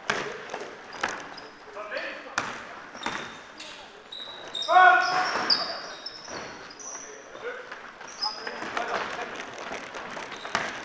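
Basketball bouncing on a sports-hall floor with repeated knocks, sneakers squeaking and players calling out, echoing in the hall. A loud shout comes about five seconds in.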